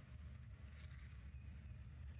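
Near silence: only a faint, steady low rumble.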